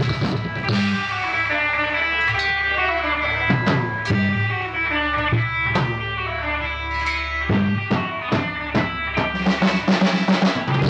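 Live band playing an instrumental passage without vocals: electric guitar lines over upright bass, with sparse drum hits that grow busier towards the end.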